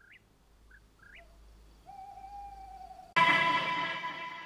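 Short musical sting: faint rising whistle-like notes and a held note, then a sudden loud chord about three seconds in that slowly fades.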